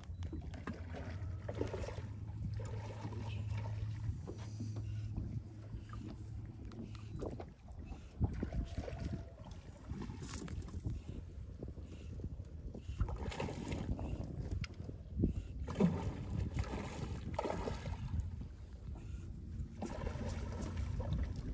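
Water lapping and slapping against the hull of a small fishing boat, with a steady low hum through the first several seconds.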